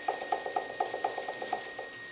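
Electric potter's wheel spinning with clay being centred under cupped hands: a rapid, regular ticking of about six or seven a second that stops just before the end, over a steady high whine.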